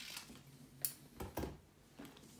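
Scissors cutting kinesiology tape: a few short snips, the sharpest a little under a second in.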